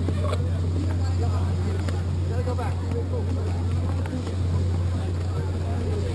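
Steady low motor hum that does not change, with faint voices talking in the background.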